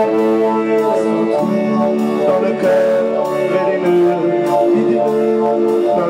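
Live rock band playing: keyboards holding chords, electric guitar and a vocal over a steady beat.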